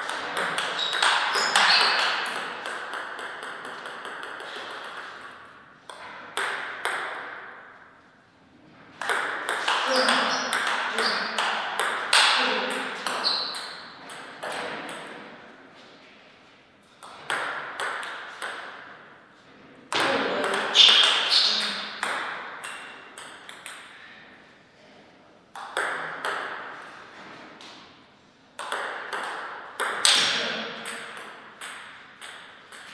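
Plastic table tennis ball struck back and forth in rallies: quick series of sharp clicks off the paddles and the table. The clicks come in several bursts with short pauses between points.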